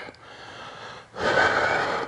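A man's hard breath out, about a second long, starting about a second in: the exhale that goes with the effort of lifting into a reverse crunch.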